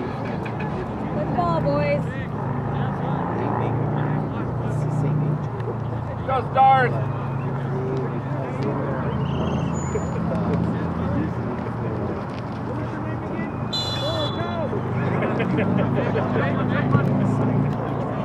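Distant voices of spectators and players calling across a soccer field, with one louder shout about six and a half seconds in, over a steady low hum like road traffic.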